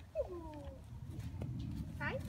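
A young vizsla puppy whines once, a single falling call of about half a second, shortly after the start, while begging for a treat.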